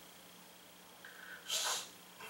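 A short, sharp breath noise from a person, a hiss-like sniff or puff lasting about a third of a second, about one and a half seconds in, after a quiet pause.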